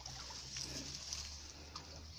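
Faint steady trickle of a shallow stream.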